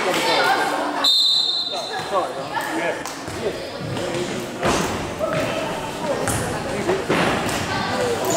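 Indoor futsal play in a large, echoing sports hall: players' and spectators' shouts and calls, with the ball being kicked and thudding on the wooden floor several times. A short high squeal sounds about a second in.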